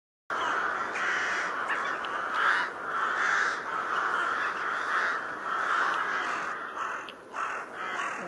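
A large flock of crows cawing together at their roost, many calls overlapping into a continuous din.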